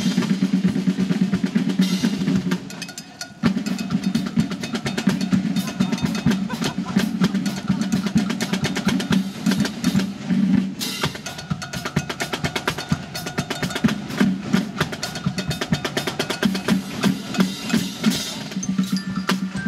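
Military band drum line playing a fast snare drum cadence with rolls, backed by bass drum beats. The playing breaks off for a moment about three seconds in, then carries on.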